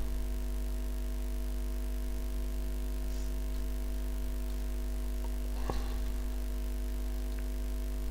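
Steady electrical mains hum with a stack of even overtones, from the recording setup. A single soft click about three-quarters of the way through.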